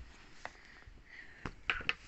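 Dress fabric being handled and folded by hand: soft rustling with a few small clicks and taps.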